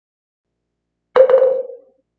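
A struck percussion instrument: one sharp hit about a second in, followed by a ringing mid-pitched tone that dies away within about a second, marking the start of a new chapter.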